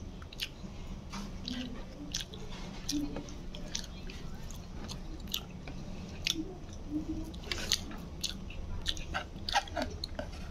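Close-up chewing and mouth sounds of a person eating rice and meat by hand, with irregular small clicks and smacks, over a low steady hum.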